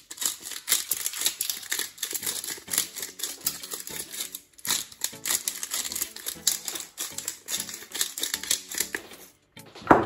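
A black pepper grinder being turned over a bowl of raw chicken wings, giving a fast, dry crackling grind that pauses briefly about four and a half seconds in and again just before the end.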